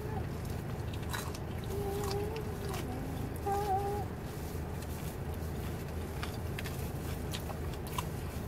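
Close-up chewing of a sandwich: wet mouth clicks and smacks scattered throughout, with a couple of short hummed "mm" sounds in the first half, over a steady low rumble.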